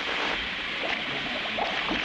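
Cartoon sound effect of a tub of water hissing and bubbling as it starts to steam: a steady hiss with small bubbling pops coming in about half a second in.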